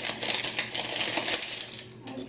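Paper and tissue wrapping rustling and crinkling in a cardboard box as items are unpacked, a rapid run of small crackles.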